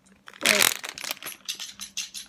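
Plastic foil blind bag crinkling as it is handled: a loud rustle about half a second in, then a run of small crackles.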